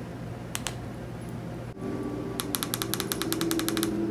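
TV remote control buttons clicking twice, then a rapid even run of about fifteen sharp clicks, some ten a second, over a steady low hum.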